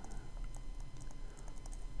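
A stylus tapping and scratching on a tablet surface while handwriting, a string of faint, irregular light clicks.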